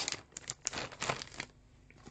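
Packaging being handled: irregular rustling with scattered light clicks, as a jewellery piece is taken out of its wrapping.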